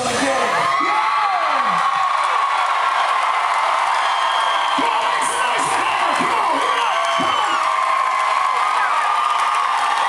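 Concert crowd cheering, whooping and screaming right after a rock song ends. The band's music cuts off at the start, leaving many voices rising and falling in pitch over steady cheering.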